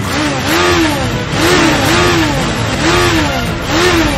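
Motorcycle engine revved in repeated blips, its pitch rising and falling with each twist of the throttle.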